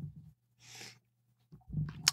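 A single short breath from a man pausing between sentences, in an otherwise quiet pause.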